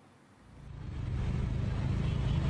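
Road traffic from cars and motorbikes: a steady low rumble that fades in about half a second in.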